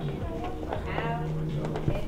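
Soft background music with low sustained notes, under faint talk and a few light knocks.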